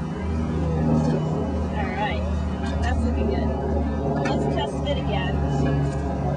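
A steady low hum, like a running engine, under quiet background talk.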